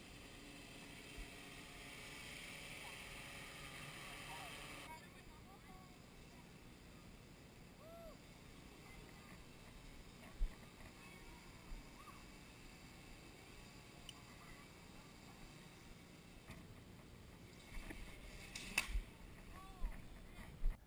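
Faint outdoor recording: a quiet steady high hum, likely the hexacopter's motors, fills the first five seconds and cuts off abruptly. After that only faint, distant voices are heard now and then.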